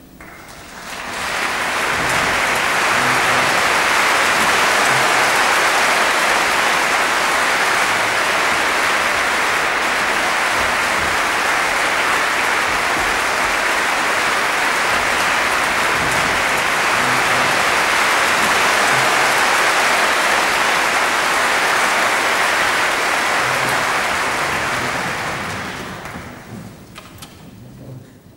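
Concert-hall audience applauding, greeting the conductor before the symphony begins. The applause swells up about a second in, holds steady, and dies away near the end.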